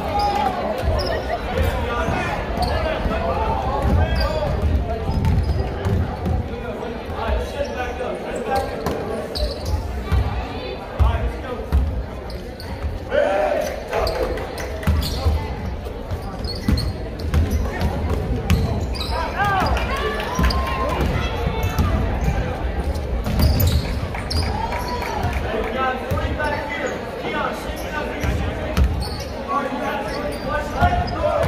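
Basketball bouncing on a hardwood gym floor during play, with short squeaks of players' shoes on the court and spectators talking, echoing in a large gym.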